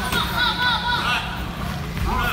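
Wheelchair tyres squeaking on a hardwood gym floor as the chairs turn and jostle: a quick run of short high squeaks in the first second or so, over a low rumble of rolling wheels.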